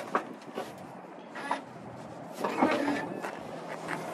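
Rivian R1T pickup's tailgate being released and lowered: a few soft clicks and knocks, one just after the start and more about two and a half seconds in.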